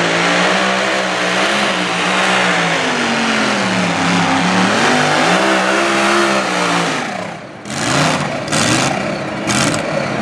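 Mini modified pulling tractor's engine running hard at high revs as it drags the weight-transfer sled, its pitch rising and falling as it pulls. About seven seconds in the engine note drops away, then comes back in a few short bursts near the end.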